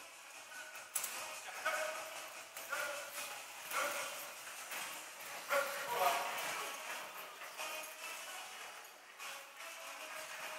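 Short, high shouted voice calls, repeated every second or so, with a few sharp clicks among them.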